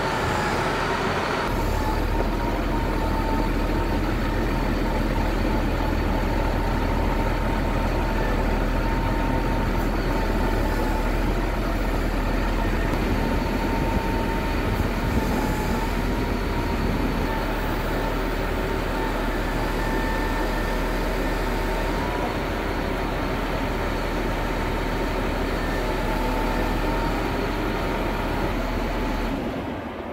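Cat 140M motor grader's diesel engine running steadily while the freshly rebuilt steering is worked, with a thin steady whine above the engine that wavers a little in pitch. The sound drops away just before the end.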